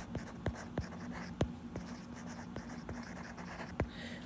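A stylus writing by hand on an iPad's glass screen: about a dozen light, irregular taps and clicks as the words are written.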